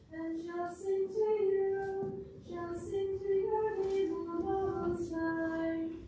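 A woman's voice singing a slow melody alone and unaccompanied, in held notes, with a short breath about two seconds in.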